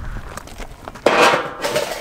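A metal shovel scraping into gravel, starting suddenly about a second in and fading out, after a low rumble.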